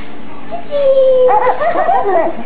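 Baby squealing: a held high note about a second in, then a run of short squeals that rise and fall in pitch.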